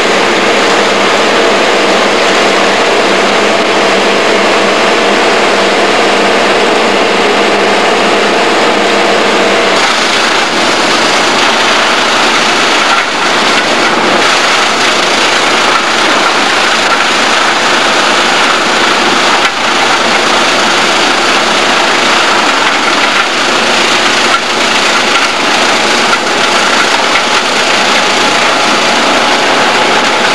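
Diesel engine of a heavy tracked land-clearing machine with a hydraulic boom, running steadily and loudly. About ten seconds in, the steady humming tones drop out and the machine noise becomes rougher and fuller.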